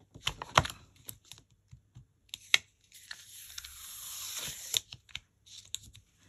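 Crafting tools and card being handled on a desk: a few sharp clicks and taps of the plastic stamping tool, the loudest about two and a half seconds in, then nearly two seconds of paper rubbing across the work surface.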